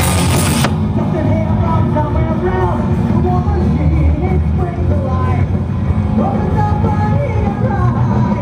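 Live rock band playing loudly, heard from the audience: heavy drums and bass under a lead melody that bends in pitch. The bright, hissy top of the mix drops away under a second in.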